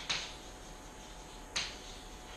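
Chalk striking and scraping on a blackboard during writing: two short, sharp strokes, one right at the start and one about a second and a half in.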